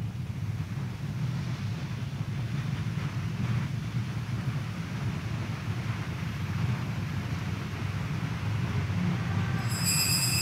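A steady low rumble of background noise with no speech, and a faint high ringing tone starting just before the end.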